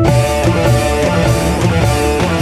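Live dangdut band playing an instrumental passage between sung verses: kendang hand drums and drum kit keep a steady beat under sustained melody instruments.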